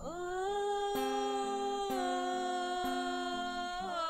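Slow worship music: a voice holds one long wordless note, sliding up into it at the start, with a new note near the end. Underneath, acoustic guitar chords strummed about once a second.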